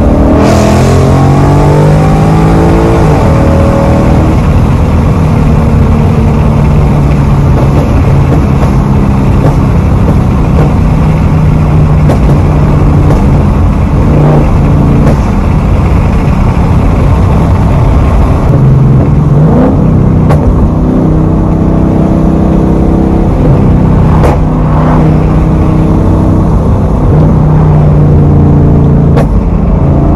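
Mustang GT's 5.0 V8 heard from inside the cabin, accelerating hard with its pitch climbing through upshifts over the first few seconds, then running on at speed and pulling again later. A few short sharp cracks stand out, exhaust pops from its burble tune.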